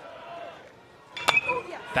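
Faint ballpark crowd ambience, then about a second and a half in a single sharp crack of a metal baseball bat hitting a pitched ball.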